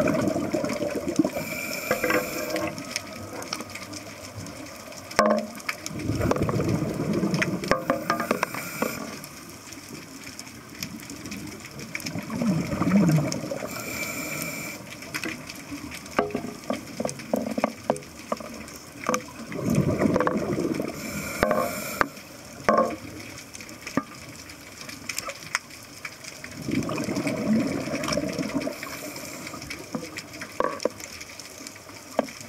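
Scuba diver breathing through a regulator underwater: a short hiss as each breath is drawn, then a longer gurgle of exhaled bubbles, repeating about every seven seconds with scattered small clicks in between.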